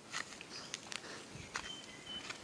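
Footsteps crunching on a dry dirt path strewn with dead leaves and banana trash, at a walking pace of about two steps a second. A thin, high, steady note sounds near the end.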